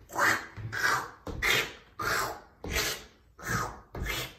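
A man making rhythmic squelching mouth sounds, about six evenly spaced hissy bursts, to mimic feet sucking through sticky, gooey mud as he marches in place.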